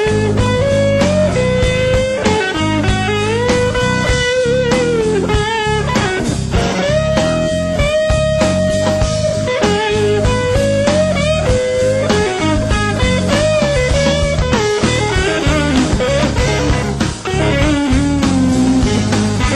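Instrumental passage of a blues-rock recording: a lead guitar plays a melody with sliding, bent notes over a full band with bass and drums.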